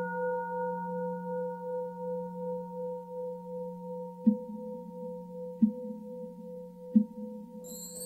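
A struck singing bowl ringing and slowly fading, its tone wavering as it decays. Three soft, low, evenly spaced knocks come in the second half, and high shimmering music starts near the end.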